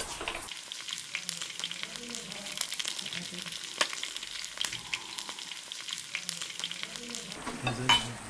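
Food frying in hot oil: a steady crackling sizzle dotted with many small pops. It starts about half a second in and gives way near the end.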